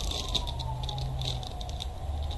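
Clear plastic bag holding a coil of PLA filament crinkling as it is handled and lifted, a run of small irregular crackles. Behind it a faint single tone slowly falls and then rises again, like a distant siren.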